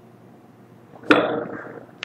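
A single whoosh sound effect about a second in, starting suddenly and fading out over most of a second, over a faint steady hiss.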